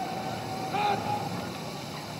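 Voices calling out over a steady low rumbling noise: a held call ends right at the start and another comes just before a second in, then only the rumble.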